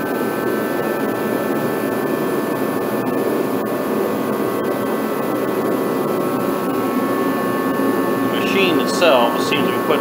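Craftsman torpedo-style kerosene heater running: a steady roar from its fan and burner with a few constant high tones over it. A man's voice starts near the end.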